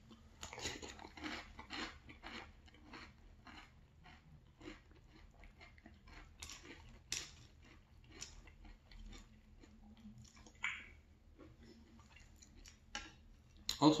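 Close-up chewing of milk-soaked Cheerios oat cereal: many small, crisp crunches scattered unevenly, with the spoon dipping into the glass bowl for more. A brief hiss comes about two-thirds of the way in.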